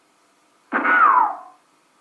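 A single cartoon sound effect: one short glide falling in pitch, lasting under a second and starting about two-thirds of a second in.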